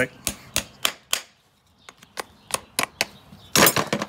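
Farrier's hammer driving a horseshoe nail through a steel shoe into the hoof wall: two runs of sharp metallic taps, about three a second, with a short pause between them. Near the end comes a brief, louder rush of noise.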